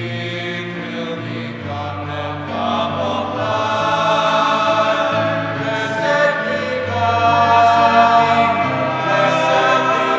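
Church choir singing a slow offertory hymn in sustained chords over held bass notes, growing slightly louder as it goes.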